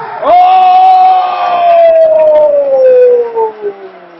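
A man's long drawn-out shout, very loud and close to the microphone, held on one vowel for about three and a half seconds with its pitch slowly falling before it trails off near the end.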